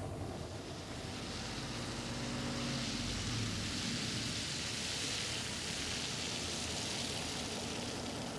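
Mercedes-Benz coach bus driving slowly up: a low engine rumble under a steady hiss of tyres and air that swells through the middle.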